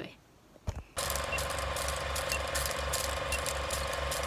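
Film-projector countdown sound effect: a steady mechanical projector clatter starting about a second in, with a short high beep once each second.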